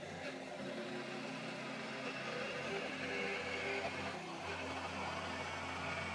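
Cordless jigsaw cutting a circular hole in the sheet-aluminium wall of a boat console: the motor runs steadily while the blade rasps through the metal.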